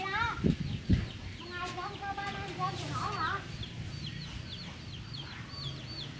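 Animal calls: a few longer, wavering pitched calls in the first half, then many short, high cheeps repeated two or three a second through the second half, with a couple of low thumps about half a second and a second in.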